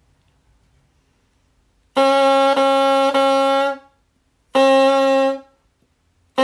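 Bassoon reed played on its bocal, without the bassoon, holding one steady pitch. The first note starts about two seconds in and is re-tongued twice without a break in the air, like a tongue touching the reed and releasing. A second, shorter tongued note at the same pitch follows near the end.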